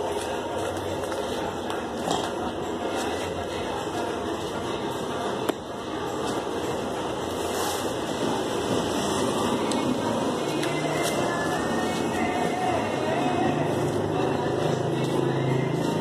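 Indistinct background voices over a steady noisy hum, with a single sharp click about five and a half seconds in.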